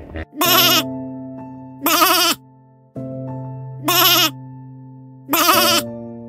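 Sheep bleating four times, each bleat short and quavering, about a second and a half apart, over soft piano music.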